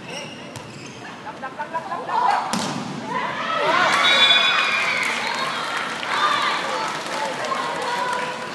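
A volleyball struck several times during a rally, sharp separate hits in the first few seconds, then a crowd in the stands shouting and cheering from about three seconds in, loudest a second later and easing off, as the point is won.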